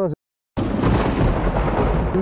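A man's voice breaks off, the sound drops out completely for a split second, then a loud rumbling rush of wind buffets the microphone.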